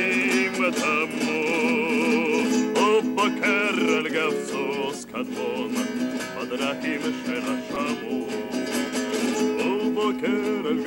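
A man singing an Israeli song, with a wavering vibrato on long held notes, accompanying himself on a strummed acoustic guitar; the voice pauses briefly about halfway through.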